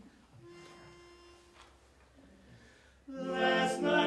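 Male vocal quartet singing a cappella in close harmony, the four voices coming in together suddenly about three seconds in. Before that there is only a single quiet held note.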